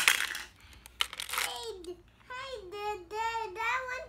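Shiny stones (marbles) dropping and clinking into a cup, with a sharp clack at the start and another short clatter about a second in. A toddler's high sing-song vocalizing follows through the second half.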